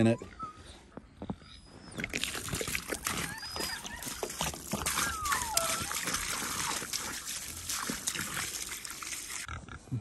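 Water poured from a large plastic jug into a snow-filled water tub, splashing and pattering steadily from about two seconds in until near the end.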